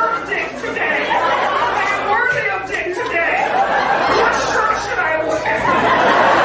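Speech only: a man talking into a hand-held microphone.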